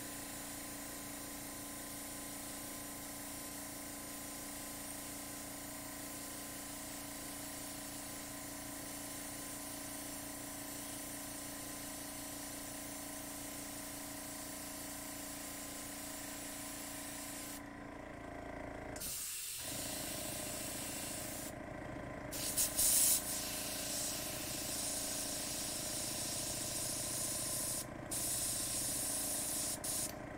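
Gravity-fed airbrush spraying thinned acrylic paint with the trigger pulled all the way open: a steady air hiss over the steady hum of the air compressor feeding it. The hiss breaks off briefly a few times, at about 18, 22 and 28 seconds, as the trigger is let off, and is louder in the second half.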